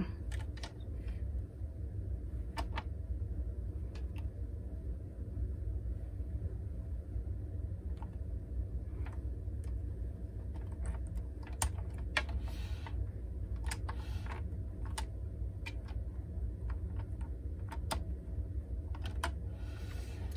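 Scattered light plastic clicks and taps as a hooked needle lifts stitches off the plastic needles of a circular knitting machine during cast-off, with a couple of brief rustles, over a steady low hum.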